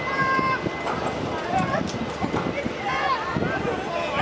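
Riders on a swinging double inverted-ship thrill ride screaming and shrieking in short bursts as it swings them round, over the clatter of other voices.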